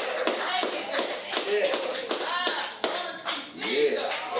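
Hands clapping a steady beat, about three claps a second, along with singing.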